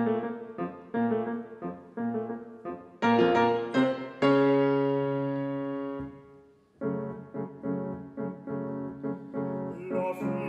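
Solo piano passage of a song's accompaniment, with no voice: repeated chords about twice a second, then a loud chord about four seconds in that is held and dies away. After a brief pause the repeated chords start again.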